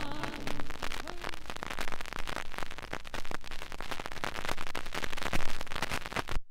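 Turntable stylus tracking the run-out groove of a 45 rpm vinyl single once the song has ended: dense, irregular crackle and pops of surface noise over a low hum, with the last of the music dying away in the first second.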